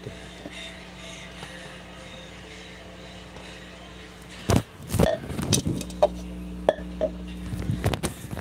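Steady low hum of room tone, then from about halfway through, a run of sharp knocks and rustling as the phone that is recording is handled close to its microphone.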